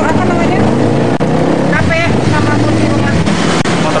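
Steady low engine hum of motor traffic running under the whole stretch, with short bits of a woman's speech over it.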